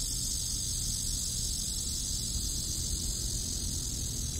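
Outdoor ambience: a steady high-pitched insect chorus over a low rumble.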